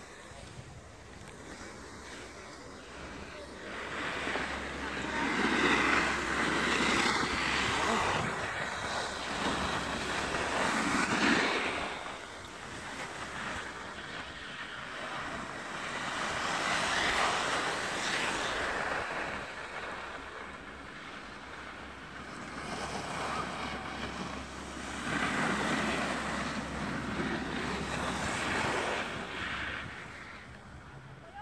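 Wind buffeting the phone's microphone and snow hissing and scraping under the rider sliding down a packed piste, swelling in three long surges and easing between them.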